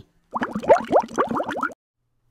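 A cartoon-style sound effect: a quick run of about a dozen short rising bloops in a second and a half, then it stops.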